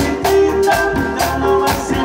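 Live band with marimba, electric keyboard, drum kit and congas playing a dance tune with a steady beat.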